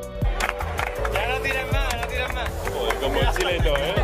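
Pool balls clicking and rolling on the table, with crowd voices rising and falling in exclamation from about a second in, over background music.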